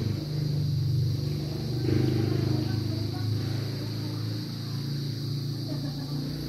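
Steady low background hum with a thin, constant high-pitched whine above it.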